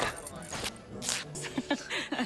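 Two sharp swishing sound effects about half a second apart as a cartoon character leaps in a dance, with a short vocal sound near the end.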